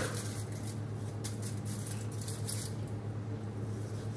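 Steady low hum with a few faint, brief rustles of hands handling something.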